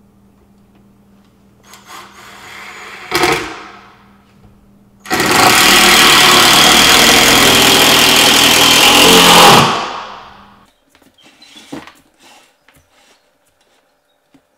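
Ryobi cordless impact driver driving a long screw through the cabinet's plywood cleat into the wall: a short run about two seconds in, then a loud run of about four and a half seconds that stops about ten seconds in.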